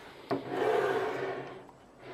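Gigabyte Z87X-OC motherboard pushed across a wooden desk top: a knock, then a scraping rub lasting about a second.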